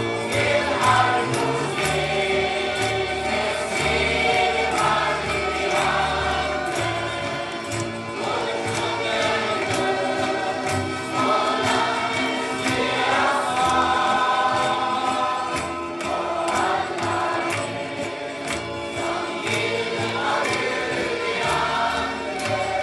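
A choir singing a Christian song with accompaniment, from a 1972 LP recording.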